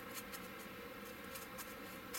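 Faint, irregular scratching of a round needle file reaming out a magnet hole in a plastic model hull.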